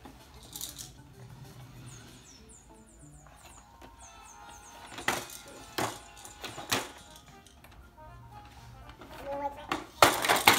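A simple electronic tune plays quietly with high chirping effects, and three sharp plastic knocks come about five to seven seconds in as a toddler's plastic push walker is knocked about and tipped over.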